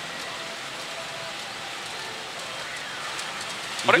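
Steady, rain-like clatter of steel balls running through pachinko machines, with faint electronic machine tones over it. A man's voice starts at the very end.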